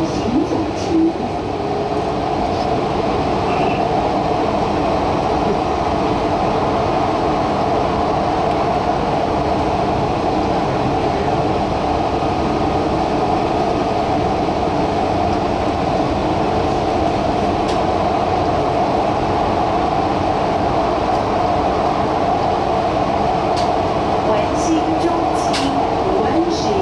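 Taichung MRT Green Line metro train running at a steady speed on elevated track, an even, unbroken rolling and motor sound heard from inside the car.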